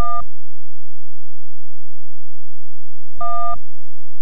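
Two short electronic beeps, each a steady tone of two notes sounding together, about three and a half seconds apart, with faint tape hiss between them. They mark the join between two recorded clips on an edited videotape reel.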